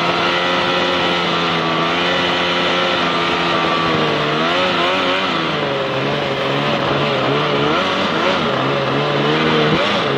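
Jet-drive outboard motor pushing a jon boat at speed, with water rushing past the hull. Its pitch holds steady at first, then wavers up and down from about four seconds in and settles lower, with a brief dip near the end.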